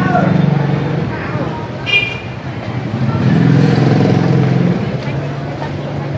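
A motor vehicle engine running close by, its low hum swelling twice, over market hubbub with voices. A short high-pitched tone sounds about two seconds in.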